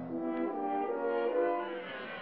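Orchestral film score with a French horn playing a slow phrase of about five held notes that step from one pitch to the next.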